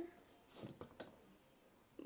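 Near silence, with a few faint short taps and rustles about half a second to a second in: hands handling a crocheted yarn bouquet with wire stems.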